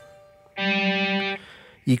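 Distorted electric guitar playing one three-note chord (first and second strings at the 15th fret, third string at the 12th: G, D and G), held for under a second and then choked off by muting the strings.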